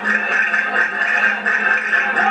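Accordion playing a dance tune, its sustained reed notes sounding steadily.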